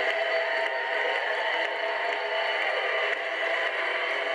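Broadway pit orchestra playing the finale music, with a steady haze of audience noise over it, recorded from the seats.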